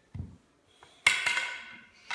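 A long stick strikes the tiled floor about a second in, a sudden clatter that rings briefly as it dies away, after a soft low thump near the start.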